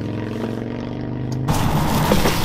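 A vehicle engine idling, a steady hum at an even pitch, heard from inside the truck camper. About a second and a half in it cuts to louder, hissy outdoor noise.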